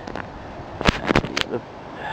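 A quick cluster of four sharp knocks or clicks a little under a second in, over a steady background hiss.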